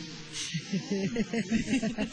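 Two women laughing together in quick, giggling bursts.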